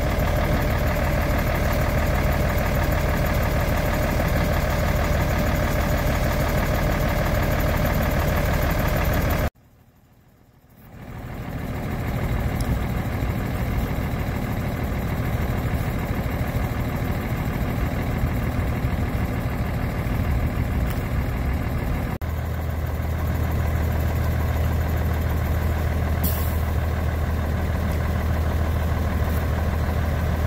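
Large diesel engine running steadily at a low, even idle. The hum is cut off about ten seconds in, with a second of near silence before it fades back up, and its low tone changes abruptly about twenty-two seconds in.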